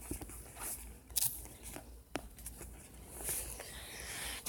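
A few faint clicks and ticks over low background noise, with the sharpest ones about a second and two seconds in.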